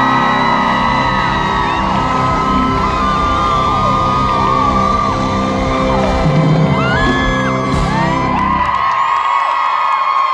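Live pop band playing loudly while a crowd screams and whoops over it, heard from among the audience. The band stops about nine seconds in, leaving the crowd cheering.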